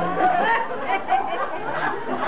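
Voices talking over one another: chatter in a large hall.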